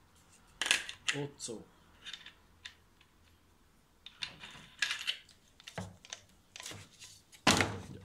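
Clicks and clinks of a flap disc, flange nut and spanner being handled and fitted onto an angle grinder that is not running, heard as a string of separate knocks. The loudest is a heavier knock near the end as the grinder is set down in its plastic case.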